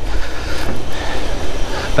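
Outdoor background noise: a steady low rumble with an even hiss above it.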